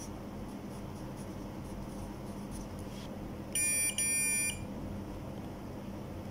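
Multimeter continuity beeper sounding twice, about three and a half seconds in: two steady electronic beeps of about half a second each, with a brief break between them. Each beep signals that the probes have found a closed connection between two points on the circuit board.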